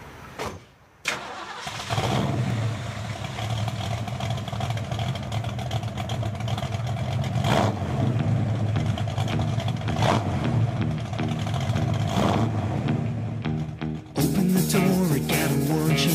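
Car engine started as a song intro: a couple of clicks, then the engine catches about two seconds in and idles with three short revs. A rock band with electric guitar comes in near the end.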